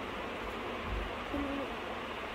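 A brief, faint pitched vocal sound, like a short hum, a little after halfway, over a steady background hiss of room noise, with a soft low thump near one second in.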